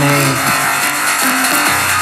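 Electronic synthpop track made on iPad apps: an Aparillo synthesizer texture over a DrumComputer beat, dense and hissy, with a few short falling pitch swoops. A vocal word ends just at the start.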